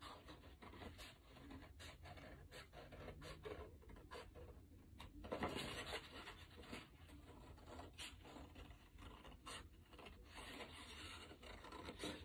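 Faint, repeated snips of scissors cutting out a paper shape, with a louder paper rustle a little past five seconds in.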